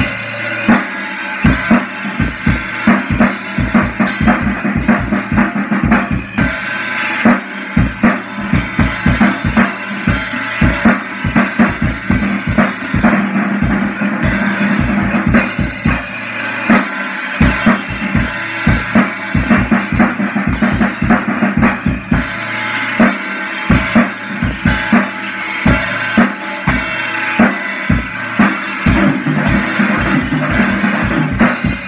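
Acoustic drum kit played without a break: a busy stream of bass drum and snare hits with cymbals ringing over them.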